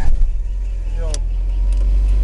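Car engine being restarted with the clutch pressed after a stall: it catches at once with a loud start, then settles into a steady, low idle rumble that grows slightly stronger.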